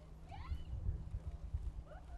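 Faint, distant whoops and shouts of a few people cheering, heard twice, over a low rumbling background.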